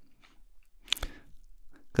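Faint mouth noises from a man at a close microphone during a pause in his talk, with one sharp lip smack or tongue click about a second in.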